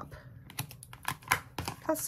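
Light, irregular clicks and crackles from double-sided foam tape being pulled off its roll and handled, with one sharper click about halfway through.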